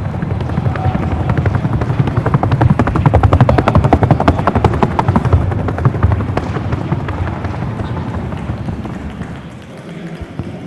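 Hooves of a Colombian Paso Fino horse on a wooden sounding board (pista sonora): the rapid, even four-beat strikes of the paso fino gait. The strikes grow louder toward the middle and fade near the end.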